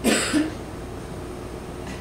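A man's short double cough, two quick coughs in the first half second.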